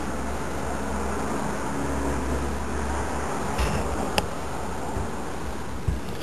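HHO electrolysis cell running, giving a steady hiss with a low hum. The hum drops away about halfway through, and a couple of light clicks follow.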